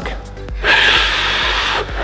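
A man sucking air in hard through his mouth against a playing card held diagonally at its corners, a breathy hissing inhalation of a little over a second that holds the card against his lips.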